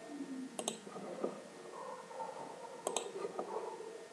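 Computer mouse clicking: two short, sharp clicks about two seconds apart, over faint room noise.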